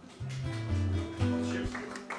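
Acoustic guitar playing a short run of single low notes, one after another, through the mixing desk.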